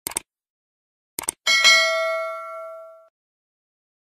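Subscribe-button sound effect: a quick double mouse click, another double click about a second later, then a bright bell ding that rings out and fades over about a second and a half.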